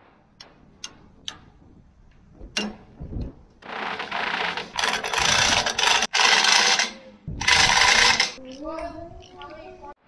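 A few light taps and a knock from a mallet on the auger's drive sprocket, then a cordless impact driver running in two long bursts, about three and a half seconds and then one second, driving the bolts that hold the new shaft's bearing to the grain auger's head plate.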